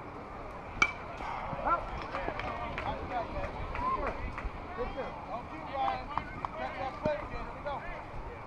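A single sharp pop of a pitched baseball smacking into the catcher's mitt, followed by overlapping voices calling out from players and spectators.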